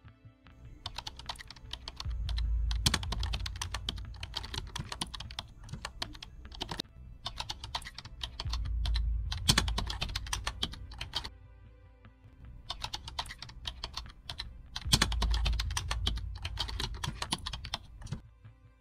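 Fast typing on a laptop keyboard, in three runs of rapid key clicks with short pauses between them.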